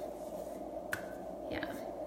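Steady room tone with a single short click about a second in, then a quietly spoken 'yeah' near the end.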